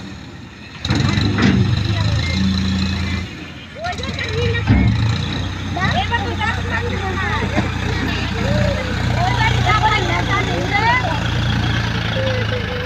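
Farm tractor's diesel engine running as it works a front-mounted hydraulic loader, growing louder and quieter as it is worked, with people talking over it.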